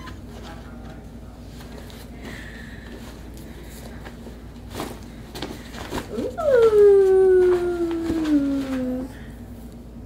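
Cloth dust bag rustling as a tote is pulled out of it, then a woman's long drawn-out 'ooooh' of delight that starts high and slides steadily down over about two and a half seconds.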